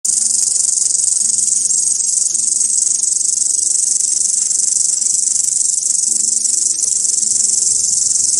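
Crickets stridulating: a loud, continuous high-pitched trill with no pauses.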